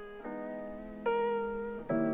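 A solo melodic instrument part playing on its own, one sustained note after another, with a new note about every 0.8 seconds. Its very lowest frequencies are cut with an equaliser.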